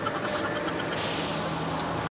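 A motor vehicle's engine running steadily with a low hum; a hiss comes in about a second in.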